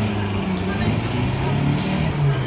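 Electronic car-engine sound effect from a kiddie ride's Stamar sound board, playing through the ride's loudspeaker as a low, steady hum that wavers slightly in pitch.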